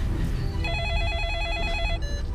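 Mobile phone ringing with an electronic ringtone: a fast, even warbling trill that starts about two-thirds of a second in.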